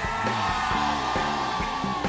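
Live rock band playing: a long held high note, sinking slightly near the end, over drum hits about twice a second and a steady bass line.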